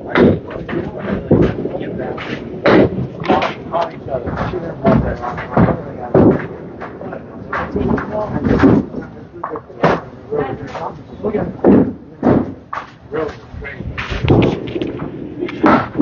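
Candlepin bowling alley sounds: many sharp knocks and clatters of small balls striking the thin wooden pins across the lanes, with voices in the background.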